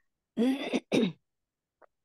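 A woman clearing her throat in two short rasps, about half a second and one second in.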